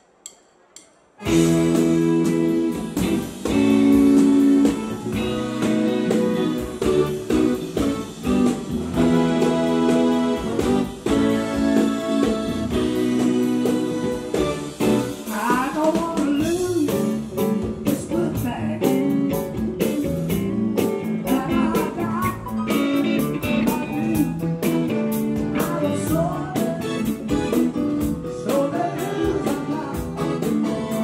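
Live band music starting suddenly about a second in: held electric keyboard chords, then a man singing from about halfway through over electric guitar and drums.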